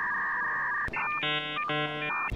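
Electronic sound effect of synthetic tones: a steady two-tone beep lasting about a second, then a brighter chord of electronic tones in two short pulses, like a ringtone or computer jingle.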